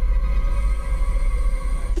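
Tense, ominous film score: sustained held tones over a deep low rumble.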